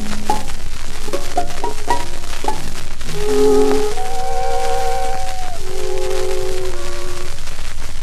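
A 1930s dance orchestra playing an instrumental passage from a 78 rpm shellac record, with steady surface crackle and hiss. Short, detached notes for about three seconds give way to sustained held chords.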